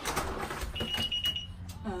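Front door being worked open: clicks and rattles of the lock and handle, with a short high electronic beep about a second in.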